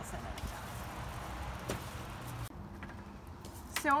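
Steady background hiss with a low rumble, which drops away abruptly about two and a half seconds in, leaving only the fainter rumble.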